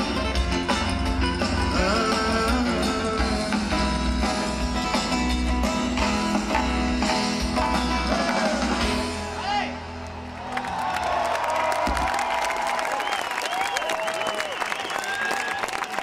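A live band with acoustic guitars and drums plays the last bars of a song. About ten seconds in, the music falls away and a large crowd applauds and cheers.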